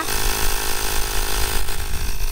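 Ryobi cordless power inflator running steadily, its compressor motor buzzing as it pumps air into a car tyre.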